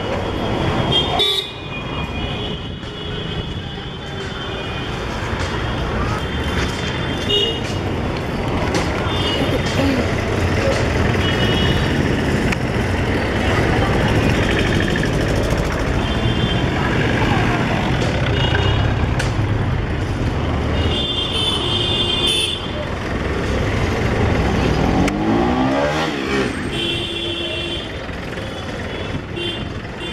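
Busy city street traffic: engines running with a constant rumble while car horns toot again and again, in short beeps and one longer honk about two-thirds of the way through.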